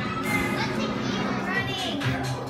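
Young schoolchildren chattering and calling out over music playing.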